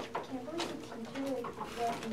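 Faint, indistinct voices murmuring.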